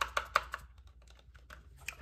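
Light, rapid clicking taps of long acrylic nails on a small contact-lens box as it is handled. The taps come thick for about half a second, then only a few scattered ones follow near the end.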